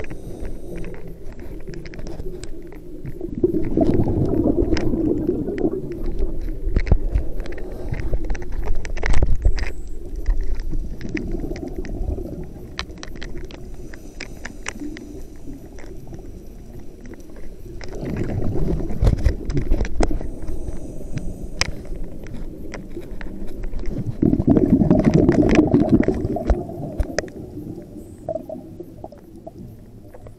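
Underwater sound of a scuba diver's regulator breathing: bursts of exhaled bubbles swelling and fading every five to ten seconds, the loudest near the middle and about three-quarters of the way through, with scattered small clicks between.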